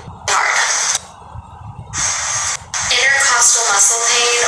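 A woman talking, breathy at first, with a quieter moment about a second in and plain speech from near three seconds on.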